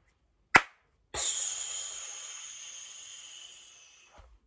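A "fireworks clap" cheer: one sharp hand clap, then a long hiss made with the mouth, like falling sparks, that fades away.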